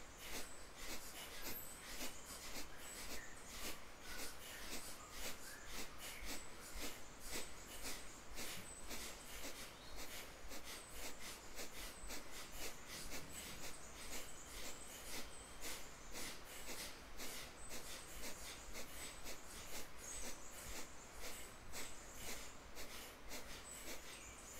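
Kapalabhati breathing: a fast, even rhythm of forceful nasal exhales with passive inhales between them, about two a second.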